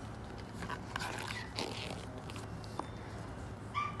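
Pages of a large picture book being turned by hand: a papery rustle and flap about a second in, over a steady low background hum.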